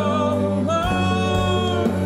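Live band: a male lead vocal sung over electric guitar, upright bass and drums, with one long held sung note across the middle.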